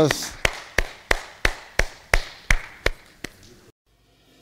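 Hands clapping in a steady rhythm, about three claps a second, growing fainter, then cut off abruptly just before the end.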